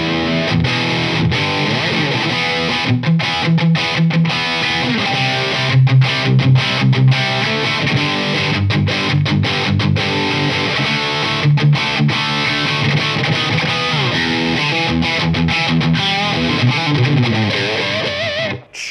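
Distorted electric guitar riff on a Les Paul played through a Marshall DSL40 combo amp, giving a chewy Marshall crunch. Chugging rhythm playing is cut by many short, sharp stops.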